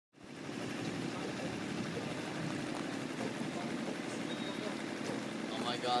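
A small boat's motor running steadily at low speed.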